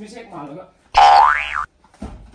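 Comedic sound effect: a loud pitched tone that sweeps up in pitch and then back down, lasting under a second and cutting off suddenly.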